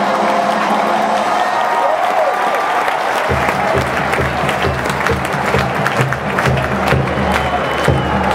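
Marching band music under stadium crowd applause and cheering. A held band chord fades over the first few seconds, then low brass and drums come in about three seconds in.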